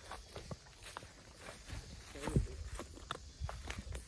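Footsteps walking on a dirt path, a run of irregular short steps over a low rumble. A brief pitched sound, like a voice or call, comes about halfway through and is the loudest moment.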